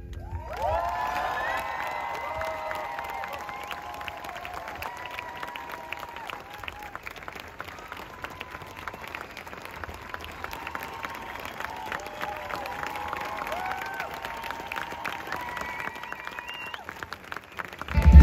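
Concert crowd clapping and cheering, with voices calling out in long whoops over a dense patter of hand claps. The cheering is loudest in the first seconds and then settles into steady clapping.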